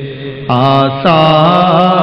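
A man's voice reciting a naat as a long, wavering melismatic sung line with no clear words. The voice swells in about half a second in, breaks for a moment at about one second, then carries on.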